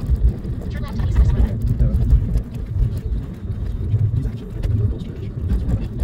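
Low, steady rumble of a moving car's tyres and engine, heard from inside the cabin.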